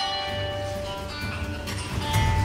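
A phone playing a melody of bell-like musical notes.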